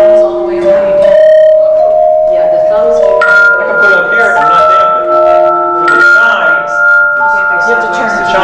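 Hand chimes rung one after another, each a steady pure tone at a different pitch, starting about once a second and ringing on so that the notes overlap.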